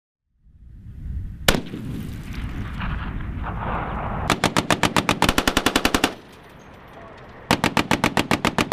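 Machine-gun fire: a single shot about a second and a half in over a low rumble, then a long burst of automatic fire at about ten rounds a second. After a short pause a second burst begins near the end.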